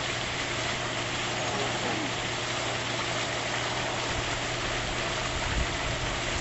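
Steady mechanical hum over a constant background hiss, with no clear changes.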